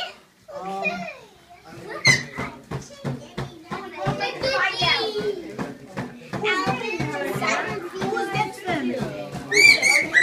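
Several children and adults talking and calling out over each other, with a child's high-pitched squeal near the end.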